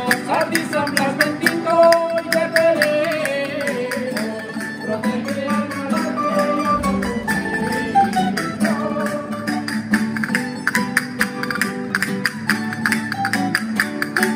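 Spanish folk song played on acoustic guitar and a twelve-string Spanish lute, strummed in a quick steady rhythm, with a man's voice singing a wavering melody and castanets clicking along.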